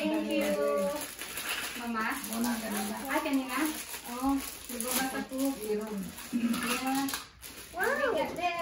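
Young children's voices in short, high-pitched vocalising and babble, one sound after another, without clear words.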